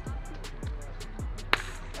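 Background music with a deep bass hit that drops in pitch about twice a second, and one sharp crack of a bat hitting a baseball about one and a half seconds in.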